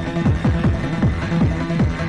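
Fast electronic dance music from a DJ mix. Deep, falling-pitch bass hits come about four times a second under a steady held tone.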